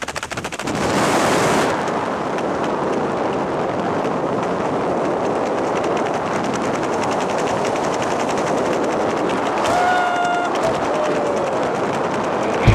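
Wind rushing over the microphone under an open parachute canopy. For the first couple of seconds there is a rapid flapping flutter of fabric, then a steady rush of air. A short pitched sound comes near the end.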